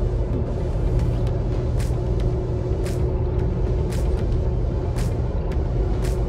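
Car cabin road noise at expressway speed: a steady low rumble from the tyres and engine, with a light, sharp tick roughly once a second.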